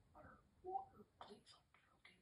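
A person's voice, quiet and partly whispered, saying a few soft words.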